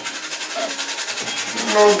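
A whole nutmeg being grated on a small hand grater, in rapid, even rasping strokes.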